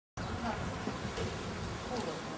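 Steady outdoor background noise with a low rumble, with faint distant voices.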